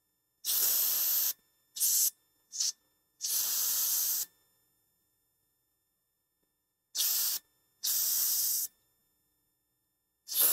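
Freeze spray hissing from an aerosol can in six short bursts, four in quick succession and two more about three seconds later. It is being sprayed onto a shorted iPhone 7 logic board (a short on the VDD Boost line) so that frost melting off the hot part shows which component is shorted.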